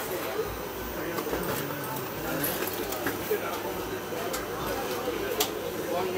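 Indistinct voices chattering over the steady running noise of a passenger train moving slowly alongside a platform, with a few sharp clicks.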